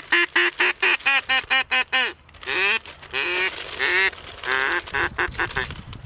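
Duck call blown in a fast run of quacks, about five a second, then, after a short break, a second, looser series of quacks.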